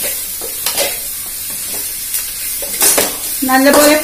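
Chopped onion and green chilli sizzling in oil in an aluminium kadai, stirred and scraped with a perforated metal spoon: a steady frying hiss with a few scrapes of metal on the pan.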